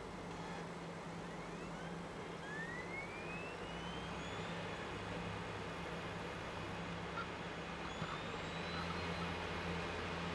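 Steady background hiss over a low electrical hum, with a few faint rising whistles.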